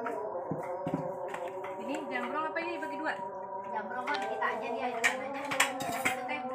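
Indistinct background chatter of people talking, over a steady hum, with a few light clicks and clinks of dishes and utensils.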